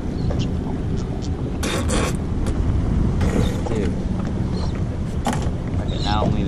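Spinning reel cranked under the load of a hooked fish, its gears working with a few sharp clicks about two seconds in and again near the end. A steady low rumble of wind on the microphone runs underneath.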